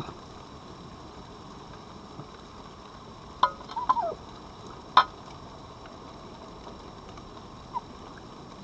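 Red foxes feeding at dishes on gravel: two sharp clicks, about three and a half and five seconds in, with a short wavering squeak between them, over a steady hiss.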